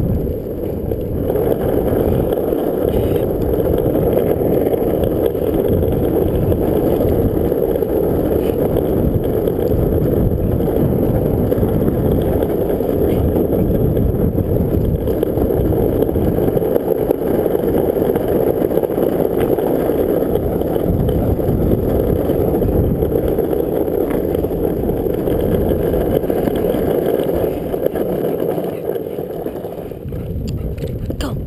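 Longboard wheels rolling over rough asphalt at speed, a steady continuous rumble that eases slightly near the end.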